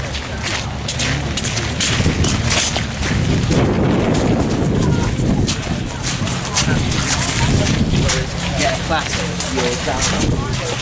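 Footsteps crunching on wet gravel amid indistinct voices, with a low rumble that swells from about two seconds in and eases near the end.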